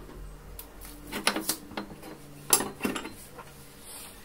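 Small mounting hardware (screws and spacers) clinking and knocking against the plastic back of a flat-screen TV as it is fitted, in two short clusters of clicks, the second the loudest.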